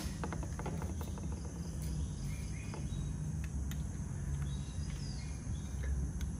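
Steady low background hum, with a few faint clicks and taps in the first second as the bulb's plastic base and glass tubes are handled.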